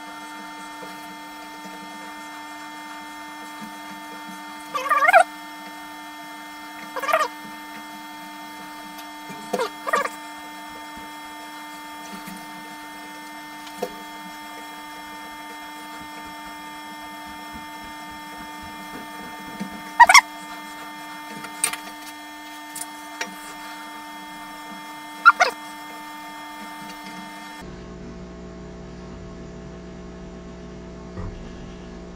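Steady electrical hum of a laser cutter, made of several fixed tones. About six short, sharp squeaks come at irregular intervals over it.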